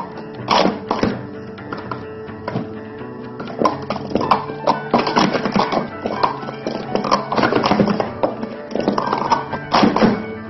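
Guitar music with the quick, irregular clatter of plastic sport-stacking cups being stacked up and brought down on a stacking mat.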